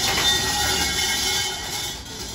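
Shinto shrine bell (suzu) jangling as its rope is shaken, a steady metallic rattle that eases off near the end.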